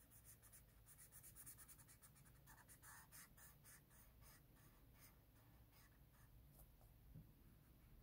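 Faint, quick strokes of a large Magnum permanent marker's felt tip rubbing on paper as an area is coloured in, thickest in the first few seconds and thinning out later.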